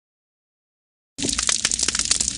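Silence, then about a second in an underwater coral reef recording starts abruptly: a dense crackle of countless sharp clicks, the sound of snapping shrimp.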